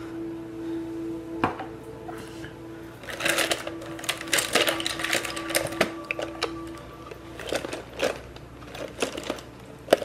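Background video-game audio from a PlayStation: a steady held tone with music, which drops away about two-thirds of the way through. A dense run of rapid rattling clicks comes in the middle, and scattered sharp clicks follow.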